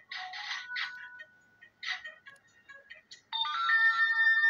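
Tinny music played through a smartphone's small speaker: short bursts at first, then a held chord of steady tones starting about three seconds in.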